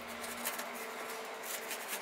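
Knife slicing the rind off a pineapple: a faint rasping scrape with small crackles.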